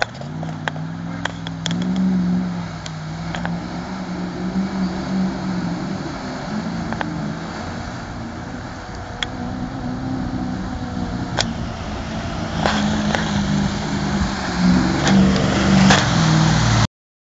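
Range Rover engine pulling through a river crossing about 1.2 m deep, its revs rising and falling as it works through the water, over the steady rush of the river. It grows louder near the end as the truck comes up out of the river toward the camera.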